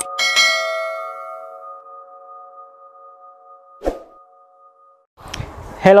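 A bell-like chime sound effect, struck once, rings and fades away over a few seconds. A single sharp click comes about four seconds in.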